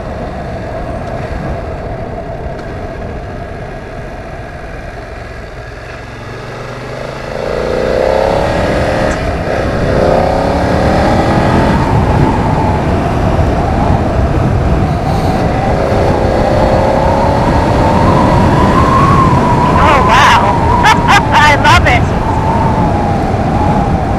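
BMW F900R parallel-twin engine with road and wind noise, heard from a rider's camera. It drops to a low, quieter note for the first few seconds, then pulls away from about seven seconds in, its pitch climbing in several rising sweeps as the bike accelerates, before settling into a steady higher cruise note with another climb near the end.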